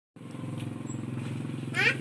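A small engine running steadily, a low even hum. A man's voice starts speaking just before the end.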